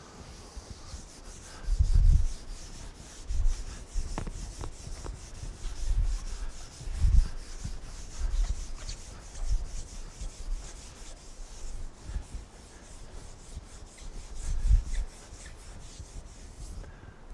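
A chalkboard being wiped clean with an eraser: rapid back-and-forth scrubbing strokes that run on with short breaks, with a few dull low thumps among them.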